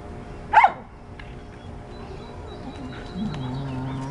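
Dogs at play: one sharp, loud bark about half a second in, then a lower, drawn-out dog vocalization starting near the end.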